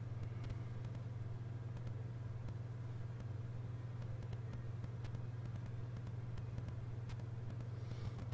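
A steady low hum, with a few faint scattered ticks above it.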